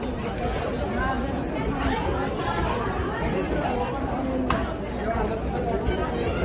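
Crowd chatter: several people talking at once, with no one voice standing out.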